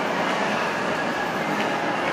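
Steady, even background din filling a busy indoor play area, with no distinct voices or knocks standing out.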